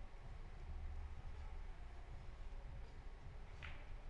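Quiet billiards-hall room tone: a low steady hum with faint background murmur, and one faint short sound near the end.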